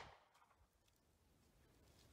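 Near silence: faint background only, with the last trace of a pistol shot dying out at the very start.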